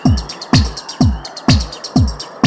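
Techno track with a four-on-the-floor kick drum, about two thumps a second, and hi-hat ticks between the kicks. High chirping sounds run over the beat.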